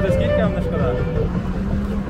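People talking over a steady low rumble of city street traffic, with a vehicle's engine hum underneath.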